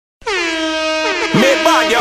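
Air horn sample, the kind dropped into dancehall mixes, sounding in one long steady blast that starts just after a moment of silence. A voice comes in over it about a second in.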